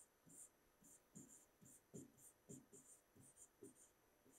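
Faint, short scratches and taps of a pen writing on an interactive whiteboard screen, about two or three strokes a second, as a handwritten word is formed.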